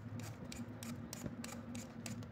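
A raw potato being peeled with a hand-held peeler: the blade scrapes off the skin in quick, repeated strokes, several a second.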